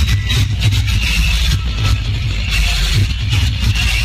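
Loud, bass-heavy DJ music from a truck-mounted stack of 21-inch and 18-inch bass speaker cabinets, with the deep pulsing bass dominating everything else.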